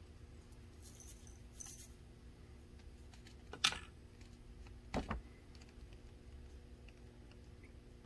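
A few faint, light clicks and taps from small objects being handled. The sharpest click comes about three and a half seconds in and a dull knock about five seconds in.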